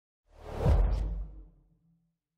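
A single whoosh transition sound effect with a deep low boom for a logo reveal. It swells up sharply just after the start and fades out over about a second.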